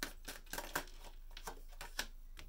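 Tarot cards handled and drawn from the deck by hand: a run of light, irregular clicks and flicks of card stock.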